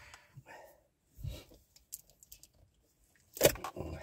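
Quiet clicks and rustles of plastic food tubs and a spoon being handled, with a sharper crackle near the end as the plastic lid comes off a tub of sour cream.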